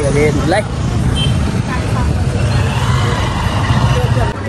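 Busy city street noise: a steady low rumble of traffic with vehicles passing, and a man's voice briefly at the start.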